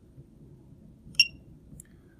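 A Horner XL4 controller gives one short, high beep about a second in as its touchscreen Esc key is pressed, confirming the keypress.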